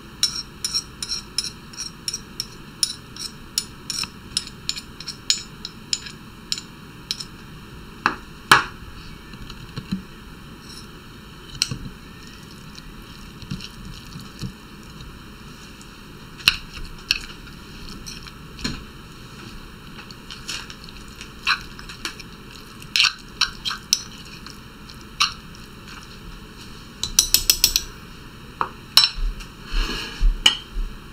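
Marble pestle pounding an herb and spice paste in a marble mortar, sharp knocks about two a second, then scattered clinks of a metal spoon stirring and scraping against the mortar, with a quick flurry of knocks near the end.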